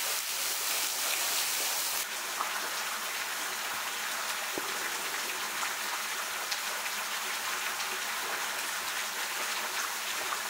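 Steady hiss of water with scattered faint drips. The hiss drops a little about two seconds in.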